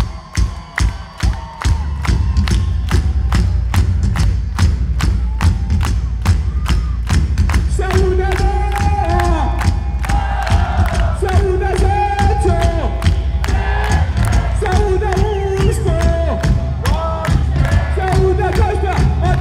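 Live pop-rock band playing a steady beat with heavy bass while the audience claps along in time; from about eight seconds in, voices sing a melody over it.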